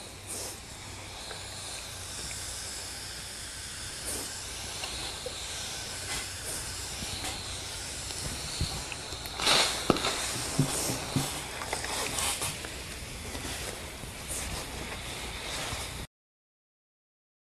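Steam iron hissing steadily as it is pushed over a pillowcase, with a louder burst of steam a bit past halfway and a few light knocks.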